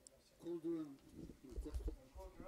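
A faint voice makes two short syllables, one straight after the other, followed by a few low thuds near the end.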